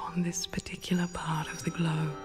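A soft, whispery voice speaking guided-meditation narration in short phrases, over faint sustained music tones.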